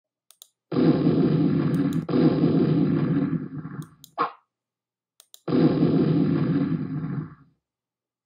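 Intro sound effects for an animated title card: two long noisy rumbling bursts, each starting suddenly and fading out, about three and two seconds long, with scattered sharp clicks and a short tone between them.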